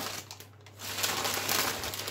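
Plastic food packaging crinkling as it is handled, starting about a second in.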